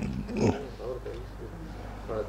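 A man's voice close on a lapel microphone: a short, loud throaty sound at the start and again about half a second in, then a few low, indistinct spoken syllables.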